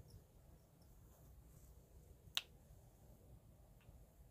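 Near silence broken by one sharp click about two and a half seconds in, as the handheld UV flashlight used for curing resin is switched off and handled, with a much fainter tick near the end.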